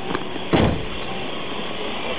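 Aftermath of a gas main explosion: a steady rushing noise with a few sharp clicks near the start and one heavy thud about half a second in, as blast debris comes down.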